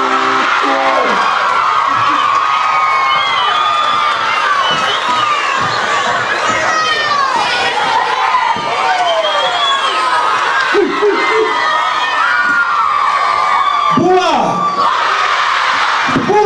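Large concert crowd cheering and screaming, many high-pitched voices overlapping. A few deeper, nearer shouts stand out about two-thirds of the way through and near the end.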